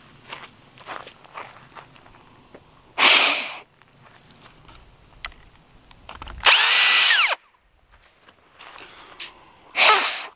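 Electric drill with a twist bit boring through a wooden post in short bursts: a brief one about three seconds in, then a longer one past the middle where the motor winds up, holds and winds down. Another short noisy burst comes right at the end.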